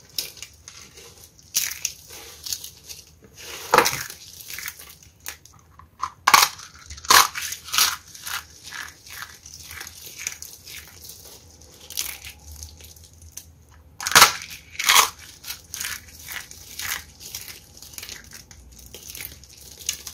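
Crunchy dry soap pieces, crushed soap-flower flakes and shavings, crumbled and rubbed between the fingers, giving irregular sharp crackles and crunches. The loudest crunches come about four seconds in, again about six to seven seconds in, and about fourteen to fifteen seconds in.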